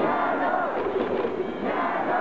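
Large baseball stadium crowd chanting and singing together, a steady unbroken mass of many voices, cheering on the batter at the plate.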